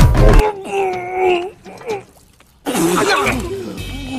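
A song with a heavy beat and a chanted vocal cuts off suddenly about half a second in. A drawn-out voice sound with a sliding pitch follows, then a brief silence, and a voice speaking from about two-thirds of the way through.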